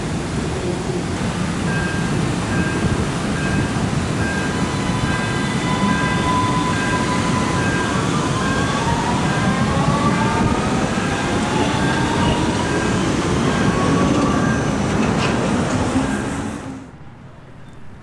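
Vienna U-Bahn U4 train running along the track below: steady rumble of wheels on rails, with a whine that rises in pitch in the middle part as the train moves off. The sound cuts off suddenly near the end.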